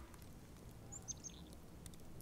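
Faint outdoor ambience with a few short, high bird chirps about a second in.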